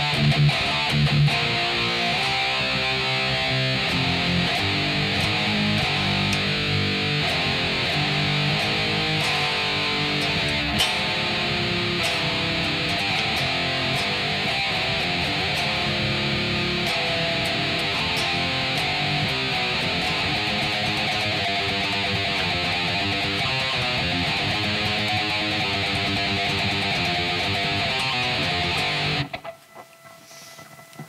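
Kiiras custom F-form electric guitar played through distortion in a continuous run of riffs. The playing stops suddenly about a second before the end.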